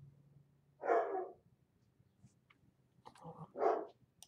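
Dog barking: one bark about a second in, then two more in quick succession near the end, the last the louder.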